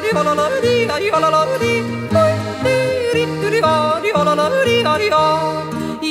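A woman yodeling an Alpine folk yodel, her voice flipping quickly between low and high notes, over an instrumental folk accompaniment with a stepping bass line.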